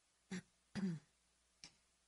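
A woman clearing her throat at a studio microphone: a short burst, then a longer pitched one, followed by a faint click.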